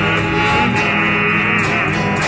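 Music: an instrumental stretch of a song between sung lines, led by guitar.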